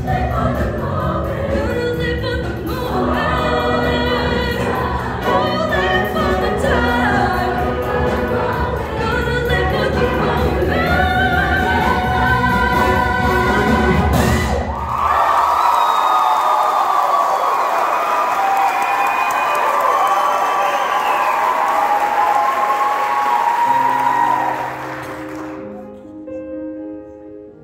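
Women's show choir singing with a live band, ending on a final hit about halfway through. The audience then cheers and applauds for about ten seconds, and this drops away sharply near the end.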